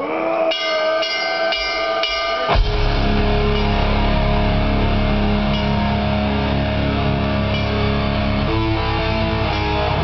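Blackened death metal band playing live: an electric guitar strikes four ringing chords about half a second apart, then at about two and a half seconds the drums and bass crash in and the full band plays on.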